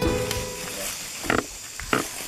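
Background music fading out, then two short, sharp sounds about half a second apart from an Asian elephant foraging in the undergrowth.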